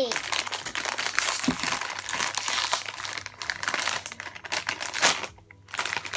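Foil blind bag crinkling and crackling in a child's hands as she struggles to open it. The crackle breaks off briefly near the end and then starts again.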